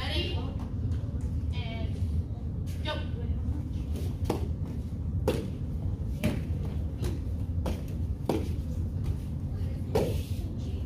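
Children performing a martial-arts form on padded mats, their strikes and kicks each giving a short sharp snap, roughly one a second, over a steady room hum.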